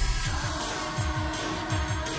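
Live Thai pop song: a female singer over a band, with a fast, driving low beat.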